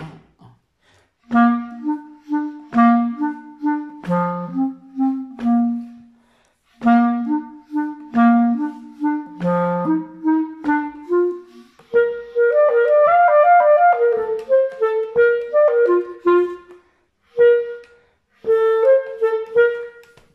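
Solo clarinet playing a jazz exercise in three-four time: a short, repeated low-register accompaniment figure of detached notes for the first half, then a quicker variation of the theme higher up.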